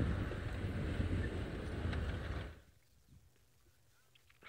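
Open safari game-drive vehicle driving on a dirt track: a low engine rumble with wind noise on the microphone. It cuts off abruptly about two and a half seconds in, leaving near silence.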